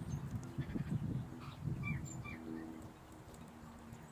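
Small birds chirping in short calls, with a pair of quick chirps about two seconds in, over low, muffled rustling and thumping close to the microphone.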